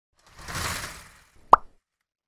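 Logo-reveal sound effect: a whoosh that swells and fades over about a second, followed by a single sharp pop, the loudest moment.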